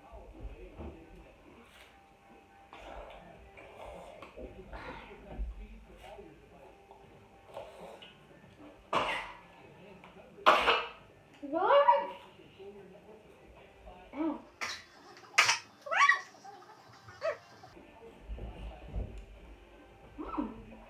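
Children's voices: scattered sharp breaths and a few short falling cries, with quiet stretches between, as they eat spicy chips.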